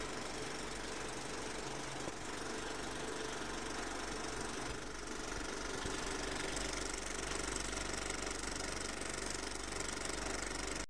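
A film projector running: a steady, fairly quiet mechanical clatter with hiss.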